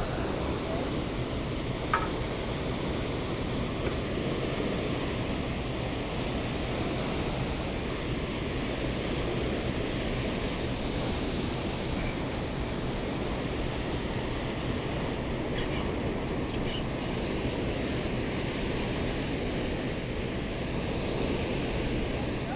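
Steady rush of water pouring through a dam spillway, an even, unbroken noise, with a single short click about two seconds in.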